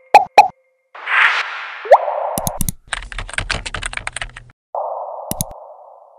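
Sound effects of an animated logo sting. It opens with two sharp pops, then a swoosh and a short rising tone about two seconds in, then a fast run of clicks like typing, and another swoosh near the end.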